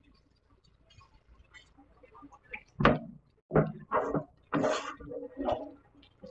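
Kitchen utensil noise: a spatula knocking and scraping in a skillet of white sauce being stirred, a handful of separate loud knocks and scrapes in the second half after a quiet start.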